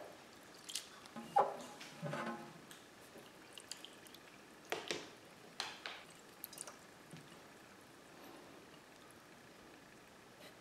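Water sloshing and dripping as cooked rice vermicelli noodles are stirred in water in a metal pan, with occasional splashes and light clicks, mostly in the first seven seconds and nearly still near the end.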